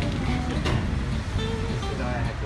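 Background guitar music over a low rumble of road traffic.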